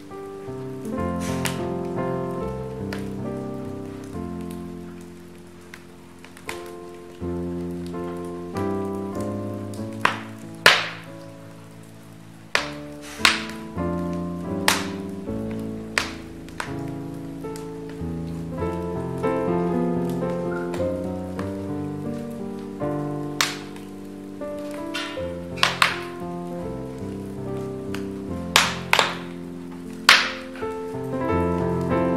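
Calm instrumental music of slow, sustained notes, over a wood fire crackling in a fireplace. Sharp pops from the burning logs come every few seconds and are louder than the music, several in the second half.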